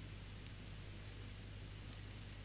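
A pause with only room tone: a steady low electrical hum, with no distinct sound.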